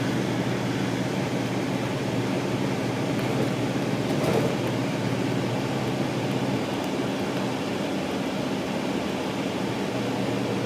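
Inside a 2006 MCI D4500CL coach bus on the move: the diesel engine drones steadily under road and cabin noise. There is a brief louder sound about four seconds in.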